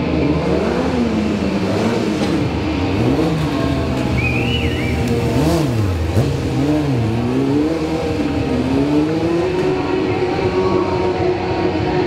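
Yamaha sport motorcycle engine revved up and down again and again during stunt riding, then held at a steadier, higher pitch over the last few seconds.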